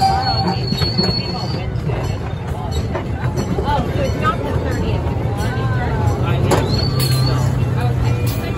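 Miniature amusement-park train running with a steady low rumble. A thin, high, steady squeal, typical of wheels on a curve, comes briefly near the start and again near the end, over the chatter of people nearby.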